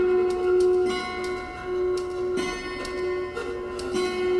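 Improvised music on the Celestial Harp and small percussion: a held ringing tone with overtones, with several irregular sharp clicks or ticks played over it.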